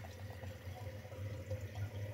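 Steady low machine hum with a faint steady higher tone above it, and a few faint light ticks.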